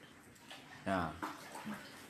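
Floodwater on a kitchen floor sloshing faintly, with a short spoken word from a person about a second in, louder than the water.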